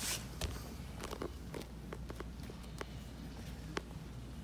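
Bare feet and gi cloth on a grappling mat as a man gets up from a pass: a brief swish of fabric at the start, then scattered soft taps and rustles, over a low steady room hum.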